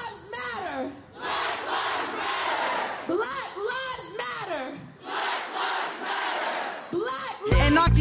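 A large crowd of protesters chanting in unison: chanted phrases about a second long, with dense crowd shouting in between. The hip hop beat drops out and comes back in just before the end.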